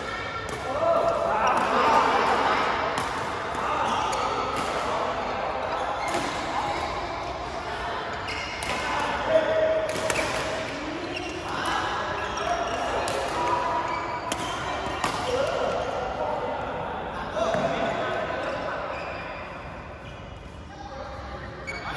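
Badminton rally: rackets striking the shuttlecock in a string of sharp hits, echoing in a large hall, with players' voices in between.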